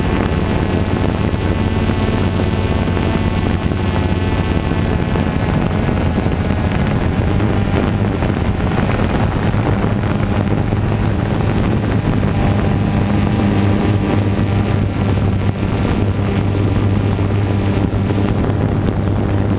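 DJI Phantom 2 quadcopter's electric motors and propellers running steadily in flight, heard from the onboard GoPro as a loud hum with a whine of overtones, shifting slightly in pitch about halfway through. Wind buffets the microphone throughout.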